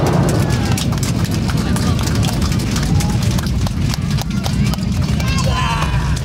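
Airliner cabin during landing: a loud, steady low rumble with many knocks and rattles as the plane rolls down the runway.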